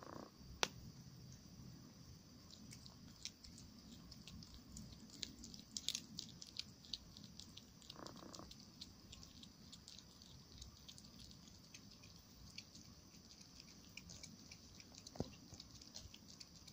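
Domestic cat chewing a mouse: faint, irregular crunching clicks of teeth on flesh and bone, thickest around six seconds in, with a few sharper single cracks.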